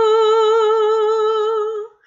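A woman singing a hymn unaccompanied, holding one long note with a gentle vibrato that breaks off just before the end.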